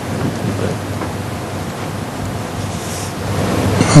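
A pause with no speech: steady hiss and a low hum from the recording's background noise.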